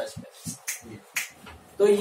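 A few short, sharp clicks, the two loudest about half a second apart near the middle.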